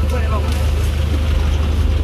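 A vehicle engine idling with a steady low rumble, with faint voices in the background.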